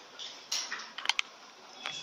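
A few small clicks and taps at irregular intervals, with a quick cluster of three about a second in.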